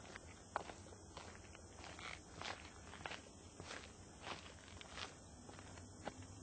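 Quiet footsteps, about two a second, of a person walking through a house.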